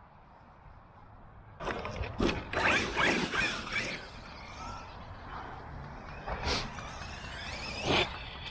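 Losi LST 3XLE radio-controlled monster truck's brushless motor whining up and down with its tyres tearing across grass as it drives hard past, loudest between about two and four seconds in. It keeps running more quietly after that, with a sharp knock near the end as it hits a jump ramp.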